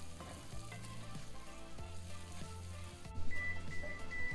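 Sliced mushrooms, onions and garlic sizzling in a cast-iron skillet while a wooden spoon stirs them. Near the end an oven timer beeps three times, signalling that the baking biscuits are done.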